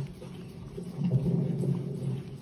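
Giant schnauzer licking and slurping ice cream out of a paper cup held close to it, a wet, muffled noise that grows louder about a second in.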